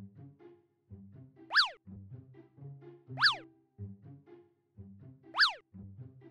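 Light, bouncy cartoon background music with a plucky bass line. Over it, a comic cartoon sound effect, a quick whistle-like swoop up and straight back down, plays three times about two seconds apart, and each swoop is louder than the music.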